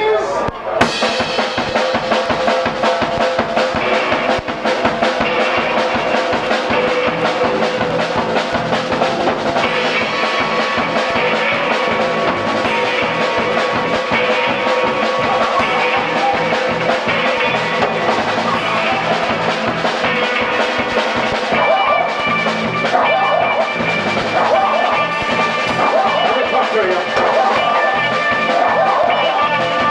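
A live band playing a song: drum kit and electric bass with guitar, kicking in together about a second in and running on at a steady, loud level.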